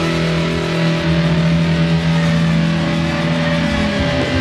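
Heavily distorted electric guitar holding a sustained chord as a steady drone, played live at stage volume, with no sung words over it.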